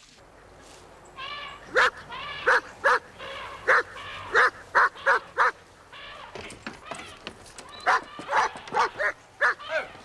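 A German Shepherd-type dog barking repeatedly, a run of sharp barks about half a second to a second apart that come closer together near the end.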